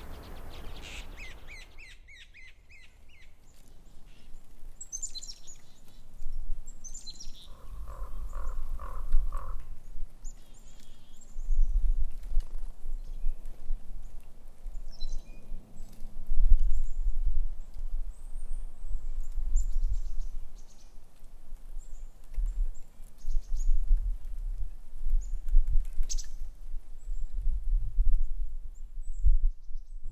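Small birds calling in snowy woods: a quick run of chirps at the start, then scattered high chirps and a short series of about five lower notes in the first ten seconds. A low rumble comes and goes through the rest and is the loudest sound.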